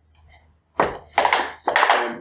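Loud crinkling and crunching handling noise right at the microphone, in three or four close bursts starting about a second in.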